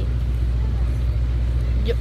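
Steady low rumble of an idling vehicle engine, with an even pulse and no change in level.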